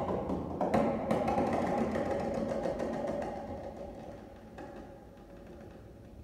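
Grand piano played in a contemporary piano piece: a few loud struck chords in the first second, then a fast run of notes, after which the sound is left to ring and fades away over the last few seconds.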